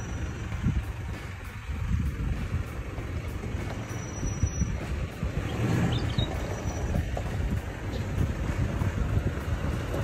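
A Toyota four-wheel drive moving slowly at low revs, its engine running with a steady low rumble as its tyres roll over gravel.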